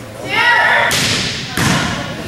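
A high voice shouts, then a volleyball is struck twice, about two-thirds of a second apart, with sharp thuds echoing in a gymnasium; the second hit is the louder.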